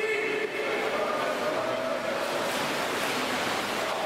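Steady splashing and churning of pool water as water polo players swim and fight for the ball, with faint voices in the background.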